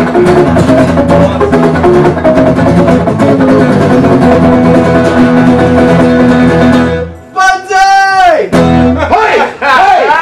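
Acoustic guitar strummed steadily in chords. About seven seconds in the strumming stops for a man's voice holding a note that drops in pitch, followed by one last strummed chord and more voice near the end as the song closes.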